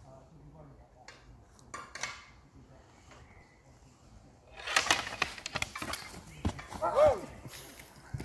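Training longswords clacking against each other: a few single knocks early, then a quick flurry of loud clacks from about halfway through. A short shout near the end.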